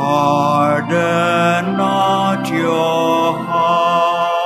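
Sung responsorial psalm with organ accompaniment: long held notes that change every second or so.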